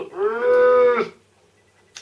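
A person's voice holding one drawn-out vowel sound, a groan-like 'oooh' lasting about a second, that bends slightly up and then down in pitch.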